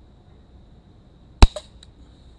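A single shot from a Beretta XXtreme air gun: one sharp crack about a second and a half in, followed by two much fainter clicks.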